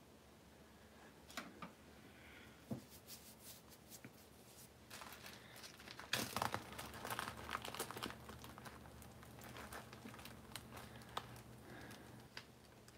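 Plastic bag crinkling as it is handled, a run of small crackles that is busiest about six to eight seconds in.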